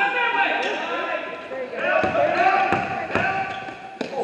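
A basketball bouncing on a gym floor, a few sharp bounces, with voices calling out during play.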